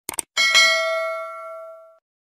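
A quick double click, then a single bell ding that rings on and fades over about a second and a half: the click-and-bell sound effect of a subscribe-button animation.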